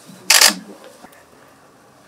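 A camera shutter firing in a quick, loud burst about a third of a second in, over faint background talk.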